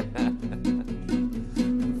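Classical acoustic guitar strummed in a steady rhythm of about two chords a second, as an instrumental accompaniment.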